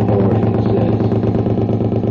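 Loud electronic noise-music drone: a low buzzing tone with stacked overtones and a rapid fluttering pulse, holding steady.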